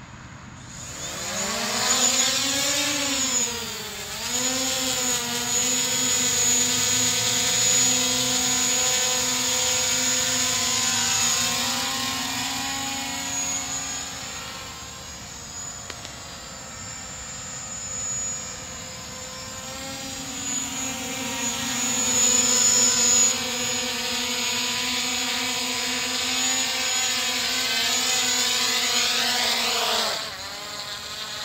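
DJI Mavic Pro quadcopter's propellers buzzing as it spins up and lifts off about a second in, carrying a strapped-on spectrum analyzer. The pitch wavers as it flies, fades as it climbs away in the middle, grows louder as it comes back down to land, and cuts off as the motors stop near the end.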